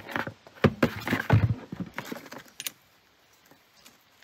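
Hands handling plastic water filter cartridges and their hose fittings: a string of clicks and knocks over the first few seconds, with a sharp click near the end of them.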